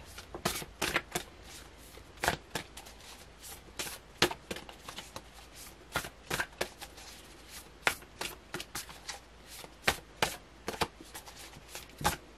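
A tarot deck being shuffled by hand: packets of cards slap and flick against each other in a quick, irregular run of soft clicks.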